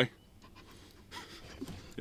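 A quiet pause with a person's soft breathing.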